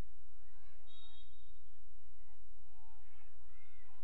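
Faint outdoor playing-field sound: distant voices shouting on the field over a steady low rumble, with a brief faint high whistle about a second in, the referee's whistle starting the faceoff.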